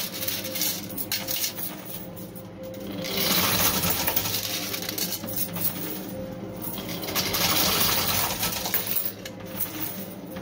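Quarters clinking and jingling as a coin pusher machine's shelves push them across and over the ledges, thinning out briefly about two, six and nine seconds in, over a steady machine hum.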